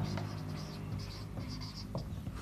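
Marker pen squeaking on a whiteboard in a run of short strokes as words are written, over a steady low hum.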